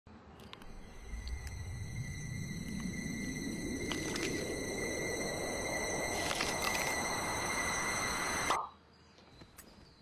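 A rush of noise that builds steadily for about eight seconds and cuts off abruptly, with a few sharp clicks and thin steady high tones riding over it. This is a sound-effect riser in a TV commercial's soundtrack.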